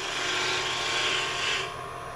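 A bowl gouge cutting a small spindle of wood turning on a lathe: a steady scraping cut that breaks off near the end.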